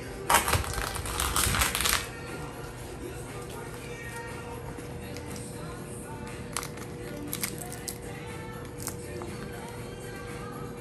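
Raw lobster tail shells being cut and cracked: a loud crunching as a knife is pushed through a shell for about the first two seconds, then a few short sharp cracks later on as the shells are pried open by hand.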